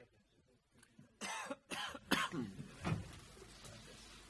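A person coughing, three quick coughs in a row a little over a second in, followed by a weaker cough or throat clearing.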